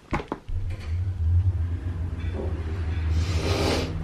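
Lift car travelling: a steady low hum and rumble, after a couple of sharp clicks at the start, with a hiss building near the end.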